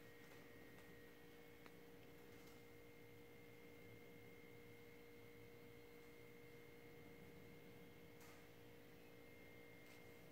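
Near silence: room tone with a faint, steady hum made of a few held tones.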